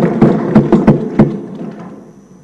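Applause from the assembly members, a dense patter of claps that dies away over the second half.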